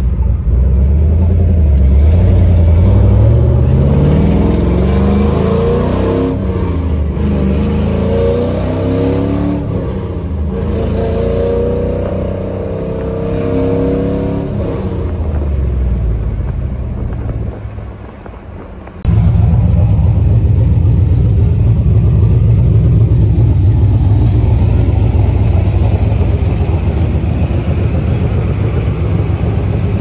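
Chevrolet Camaro engine with aftermarket headers pulling hard under acceleration, heard from inside the cabin, its pitch climbing and stepping as the gears are shifted, then easing off. After a sudden cut about two-thirds of the way through, the car's engine runs with a steady low rumble.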